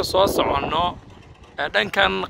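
A person speaking in short phrases, with a pause of about half a second in the middle, over a low rumble of wind on the microphone.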